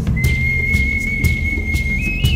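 Rock/metal band music: heavy low guitar and bass with drum hits about twice a second. A single high, pure tone enters just after the start and is held steady.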